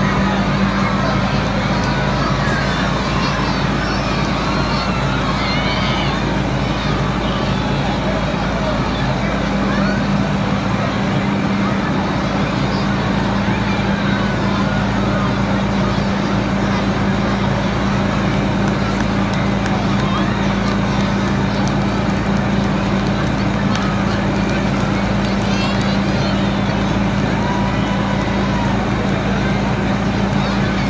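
Steady, unchanging drone of a fire engine's motor and pump running to supply a charged hose line, with the hiss of the water stream spraying.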